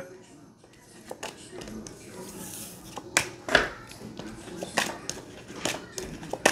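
Tarot cards being handled in the hands, making a few scattered, irregular light clicks and snaps.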